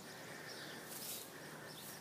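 Faint outdoor ambience: a steady low hiss with a faint high chirp about a second in.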